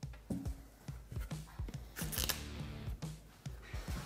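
Background music with a steady beat. Under it, protective film is peeled from a polycarbonate windshield, with a brief crackling rip about two seconds in.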